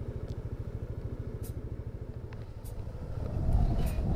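Motorcycle engine running with a steady low pulsing beat, growing louder about three seconds in as it picks up revs.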